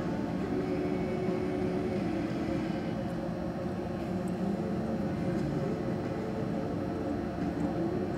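Steady low hum and background noise of a large indoor arena, with a constant held tone under it.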